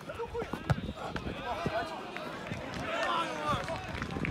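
Several voices shouting and calling over each other during football play, with a sharp thump of the ball being struck about three quarters of a second in.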